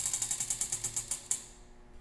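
Tabletop prize wheel spinning down, its flapper pointer clicking rapidly against the rim pegs, the clicks slowing a little and stopping about a second and a half in as the wheel comes to rest.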